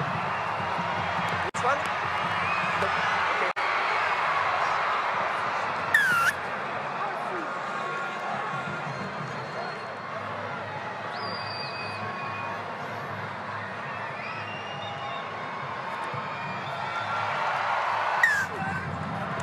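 Stadium crowd noise: a steady din of many voices, with two sudden brief dropouts near the start and a short swish about six seconds in.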